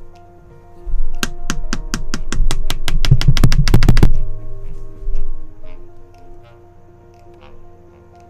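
A run of about twenty sharp taps that come faster and faster over some three seconds and then stop suddenly, with low thumping under them, over steady background music.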